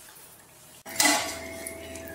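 Stainless steel bowl set down in a steel kitchen sink: a sharp clank about a second in, then the metal rings on.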